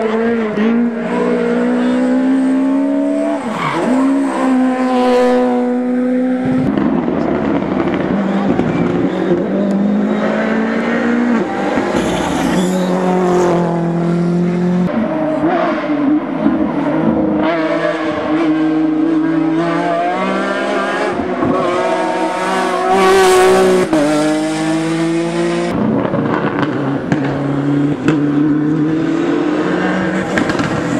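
Rally cars at full throttle, one after another, their engine pitch climbing and dropping again and again through gear changes and lifts for corners.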